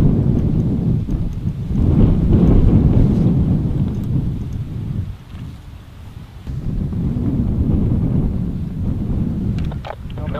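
Loud low rolling rumble of jet aircraft overhead. It builds over the first two seconds, eases about five seconds in, then swells again.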